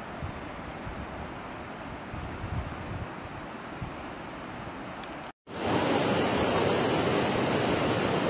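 Steady outdoor wind with low rumbles on the microphone, then after a short dropout about five seconds in, the louder, even rush of a whitewater mountain river pouring over rocks.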